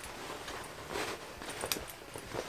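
Soft rustling of heavy denim fabric being handled and folded as a dress's bib and straps are tucked in, with a couple of faint ticks.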